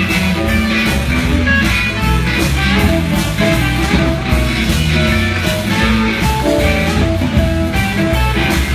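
Live blues band playing an instrumental stretch with no vocals: electric guitars over drums, with a steady beat.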